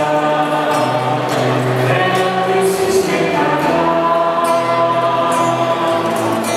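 A group of voices singing together, a slow song with long held notes.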